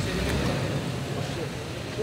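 White Toyota Land Cruiser SUV driving slowly by at close range, its engine and tyres a low steady rumble.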